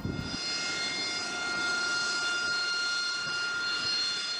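Military jet engine running, giving a steady high-pitched turbine whine over a rushing noise.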